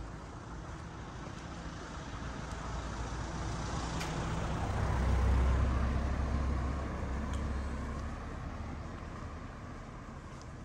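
A Renault Mégane car driving slowly past at close range, its engine and tyres growing louder to a peak about five seconds in, then fading as it moves away.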